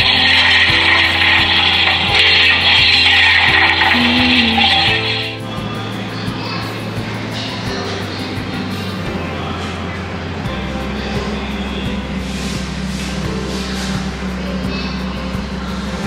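Museum exhibit speaker playing a recording of coal being shovelled into a steam locomotive's firebox: a loud rushing, scraping noise for about five seconds that stops abruptly. Background music runs underneath and carries on alone afterwards.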